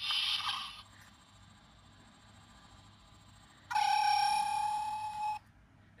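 Hallmark Keepsake Star Trek transporter chamber ornament playing its electronic sound effect through its small speaker: a short hissing shimmer at the start, then, about three and a half seconds in, a steady high tone with overtones that holds for about a second and a half and cuts off. It sounds because the batteries now make contact after the corroded contacts were cleaned.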